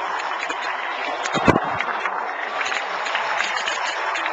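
Large stadium crowd cheering and clapping, with one thump about a second and a half in.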